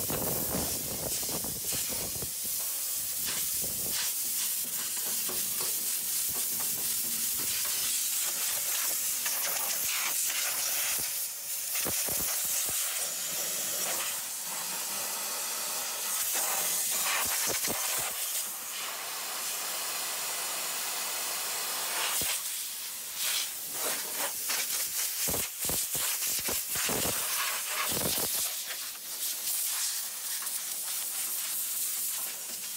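Compressed air hissing from a hand-held air-line gun in long, steady blasts. In the second half it breaks off several times in quick succession as the trigger is let go and squeezed again.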